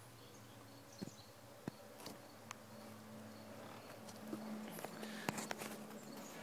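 Faint buzz of a flying insect, coming in about two seconds in and strongest in the second half, with a few light clicks scattered through.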